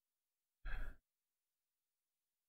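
A man's short sigh, one breath lasting under half a second, about half a second in.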